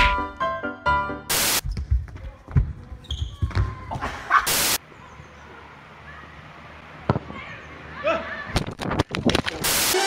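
Music for about the first second, then outdoor amateur football sound: a football being kicked and thudding, with a few faint voices. Several very loud, short bursts of noise break in, at about a second in, midway and at the very end.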